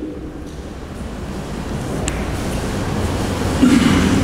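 A low rumbling noise that swells gradually louder, with a brief faint high click about halfway through.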